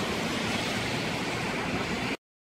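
Steady outdoor ambient noise: an even hiss with no distinct events in it.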